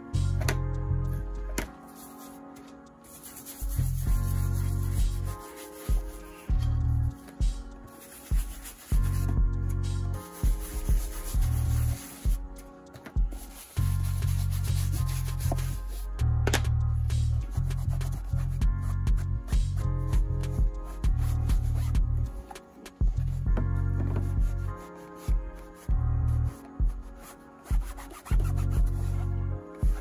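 Small bristle dauber brush scrubbing saddle-soap lather into the leather sole and rubber heel of a shoe, in repeated rubbing strokes that come and go every second or so.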